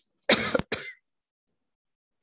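A woman clearing her throat behind her hand: one short throat-clear in two quick pushes, the first the louder, within the first second.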